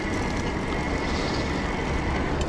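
Riding noise from an e-bike rolling along an asphalt road: a steady rush of wind and tyre noise, with a thin, steady high whine running through it.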